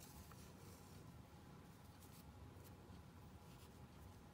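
Near silence, with faint, brief rustles of hands working cotton thread through a crocheted doily.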